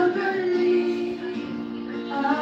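Karaoke music at home: a backing track plays, with a voice singing into a microphone over it. The sung line trails off shortly after the start, leaving the backing track.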